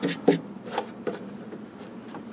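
Fingers handling and rubbing a dried, crumbling leather carrying handle on a metal instrument case: a few short scrapes and clicks, the sharpest about a third of a second in.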